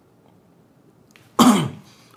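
A man's single loud cough about one and a half seconds in, short and dying away quickly.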